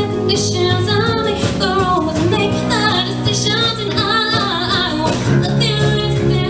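A young female singer singing a pop song live into a microphone, with acoustic guitar and band accompaniment.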